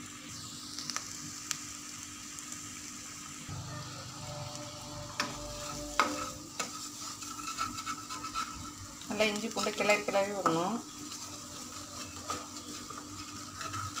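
Onion, tomato and green chilli masala with spice powder sizzling in oil in a nonstick kadai, stirred and scraped with a wooden spatula. A few sharp knocks of the spatula against the pan come around the middle.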